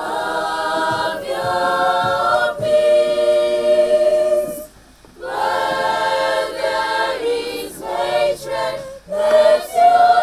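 A choir of girls singing a cappella in harmony, holding long notes in phrases, with a short pause for breath about halfway through and another near the end.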